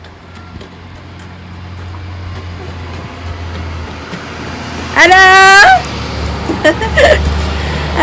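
School bus engine running in the street with a low, steady rumble that grows gradually louder.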